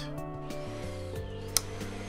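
Background music with held notes, and a single sharp click about one and a half seconds in: the power switch of a Shark DuoClean stick vacuum being pressed, just as its headlight LEDs come on.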